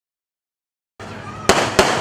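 Dead silence for the first second, then the sound cuts in. Two sharp fireworks bangs follow in quick succession near the end.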